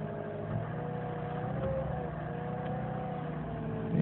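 2004 Saturn VUE's 2.2-litre Ecotec four-cylinder engine idling steadily with the car standing still, heard from inside the cabin as a low, even hum.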